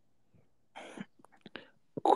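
A short pause in speech: a faint breath or whispered sound from the speaker about a second in, followed by a few small mouth clicks.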